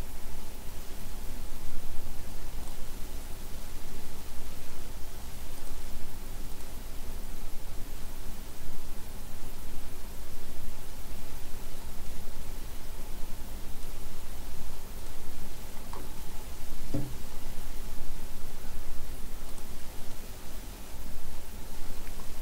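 Steady hiss of an open microphone's background noise with a faint low hum, and a single brief click late on.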